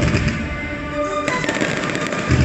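Fireworks going off during a show set to music, the music and the firework bangs heard together. A burst of sharp crackling comes in just past halfway.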